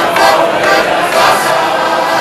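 Music with many voices singing together like a choir, loud and continuous.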